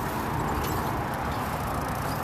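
Steady rolling rumble of a four-wheel pedal surrey running down a gentle hill on asphalt, with wind on the microphone.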